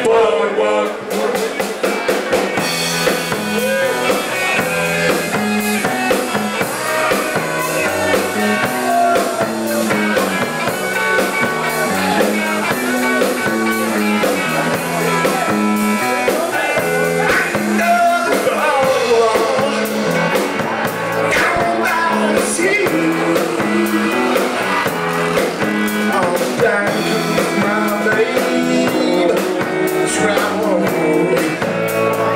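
Live rock band playing, with electric guitars and a drum kit, loud and continuous.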